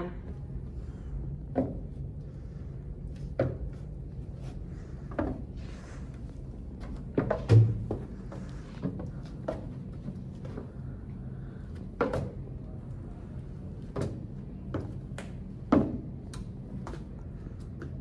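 Slow footsteps climbing and descending a wooden practice staircase, one foot per step, with ankle weights strapped on: separate knocks every second or two, the loudest a heavy thump about halfway through.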